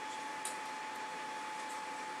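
Scissors snipping fly-tying thread: one faint, sharp snip about half a second in, trimming the tag end just tied onto the hook. Under it runs a steady room hiss with a faint constant tone.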